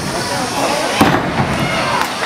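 Wrestlers crashing onto the wrestling ring mat: one sharp bang about a second in, over the voices of the crowd.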